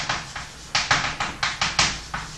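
Chalk writing on a chalkboard: a quick run of sharp taps and short scratches, one for each stroke of the letters, about eight in two seconds.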